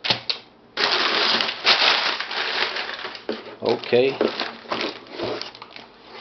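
Crumpled brown packing paper rustling and crinkling as it is pulled out of a cardboard box: a loud, dense rustle from about a second in, then shorter bursts of crackling later on.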